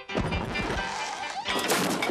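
Wind-up gramophone knocked over and crashing to the floor, as a cartoon sound effect: a heavy thud as the record music cuts off, then a rattling clatter and a second, louder smash about a second and a half in.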